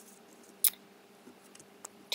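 Paper and a glue stick being handled on a table: one sharp click about a third of the way in and a faint tick near the end, with quiet paper rustle between.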